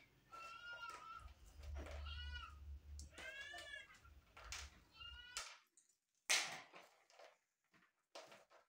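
A cat meowing about four times, each call rising and falling in pitch, over a low hum that cuts off suddenly about five seconds in. A short rustle follows near the end.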